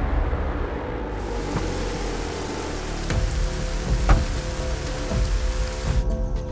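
Dark trailer score: a sustained low drone over a steady rain-like hiss, with sharp ticks about once a second in the second half, following the fading tail of a loud hit.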